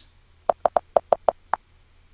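Computer keyboard keys being typed: a quick run of about seven sharp clicks lasting about a second, a word being typed into a search box.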